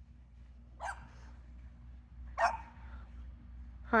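Two short barks from a Boston terrier, about a second and a half apart, over a steady low hum.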